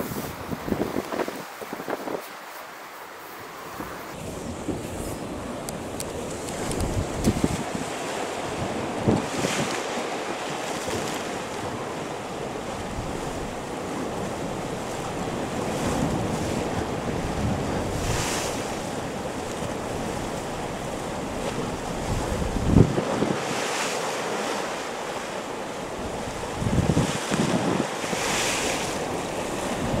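Sea surf washing and breaking on rocks, with wind gusting across the microphone in several low buffeting blasts.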